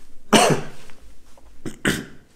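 A man coughing: a loud cough about a third of a second in and a second, shorter one near the end.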